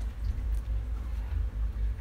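Steady low rumble of the research boat's machinery, with nothing else standing out above it.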